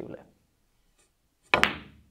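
A pool cue tip striking the cue ball, then a split second later a sharp clack as the cue ball hits the black 8-ball, ringing briefly as it fades.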